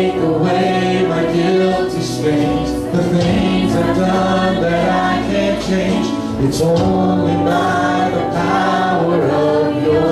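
Live worship song from a small church band: a man and a woman singing into microphones over acoustic guitar, keyboard and drums, with several voices singing together.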